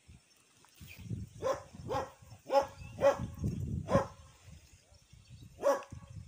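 A dog barking: a run of five barks about half a second apart, then one more near the end.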